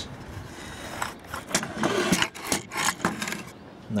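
Handling noise: scraping and several sharp knocks between about one and three seconds in, as the opened metal kWh meter is handled on a wooden table.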